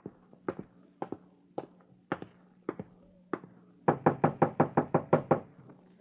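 Radio-drama sound effect of footsteps on a hard floor, about two a second, followed about four seconds in by a quick run of knocks on a door.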